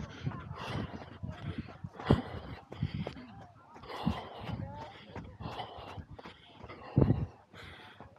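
A runner breathing hard in irregular gasps, catching his breath just after finishing a 5 km run, with indistinct voices around him.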